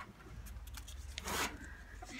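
A folded paper slip rustling as it is drawn out of a bowl and unfolded, with one louder crinkle a little past halfway.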